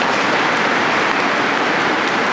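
Audience applauding: dense, steady clapping from a large crowd.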